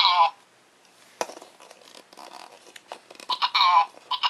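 Dave Banana Babbler Minion Happy Meal toy talking: short bursts of high-pitched babble at the start and again near the end, with a sharp click about a second in and faint handling of the toy between.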